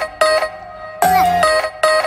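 Background music: a bright tune of short, sharply struck pitched notes in a short phrase that repeats over and over.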